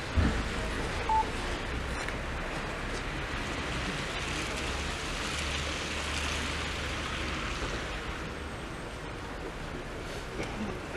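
Steady outdoor noise with wind rumbling on the microphone, broken by a knock just after the start and a brief high beep about a second in.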